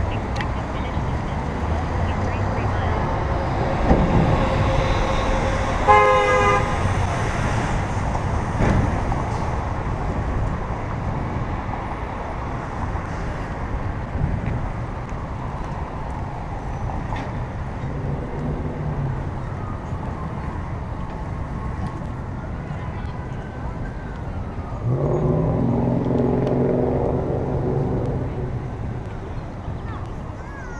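City street traffic noise heard from a moving bicycle, with a short car horn toot about six seconds in and a louder low pitched vehicle or voice sound near the end.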